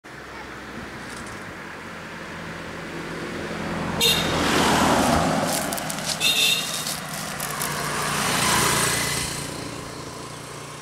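A car driving past on a narrow road, followed a few seconds later by a motor scooter passing. The engine and tyre noise swells and fades twice.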